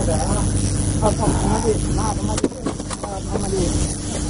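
Steady low hum of a fishing boat's engine running, with a couple of sharp knocks about halfway through.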